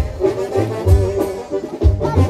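Music played loud, with brass carrying the melody over a pulsing bass.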